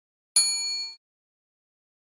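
Notification-bell sound effect: a single ding about a third of a second in, several high ringing tones together, fading out within about half a second.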